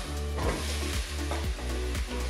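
Chopped onion sizzling in hot olive oil in a soup pot while it is stirred with a wooden spoon, with soft background music.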